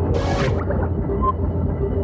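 Sci-fi sound effects of spaceship corridor doors opening in sequence: a steady low electronic drone with a softly pulsing tone. Just after the start comes a short hiss, about half a second long, as a door slides open.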